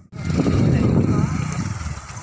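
Motorcycle engine running at low revs as it is pushed through mud and water, with men's voices calling over it.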